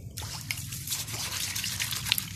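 Water splashing and sloshing in a stainless steel bowl as a hand swishes through it, with many small splashes and drips, starting just after the beginning; a steady low rumble runs underneath.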